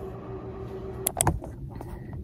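A steady low hum, then two or three sharp clicks in quick succession about a second in, followed by a quieter stretch.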